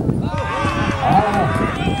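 A man's voice talking or calling out, starting a moment in and running on, over a low outdoor rumble.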